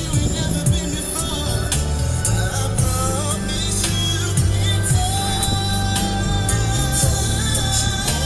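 Background music: a song with singing over a steady beat and a strong bass line.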